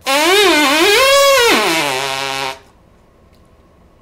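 A trumpeter's buzzed lip tone, with the compression done by the tongue rather than by tightened lips. A loud buzzing note wavers, sweeps up to its highest pitch about a second in, then drops to a low note that is held until it stops sharply about two and a half seconds in.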